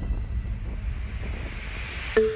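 Wind rumbling over the microphone of a bike-mounted camera while riding, a steady low noisy roar, as the tail of an electronic music track fades away.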